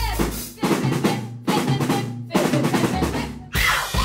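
Live rock band's drum kit playing a break with the rest of the band dropped out: bursts of kick, snare and cymbals cut off by short, sudden stops. The full band comes back in just before the end.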